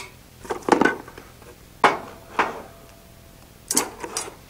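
Small Stanley steel squares, taped together, being handled and pulled apart: a few sharp metallic clicks and clinks spread through a few seconds, one followed by a faint ringing tone.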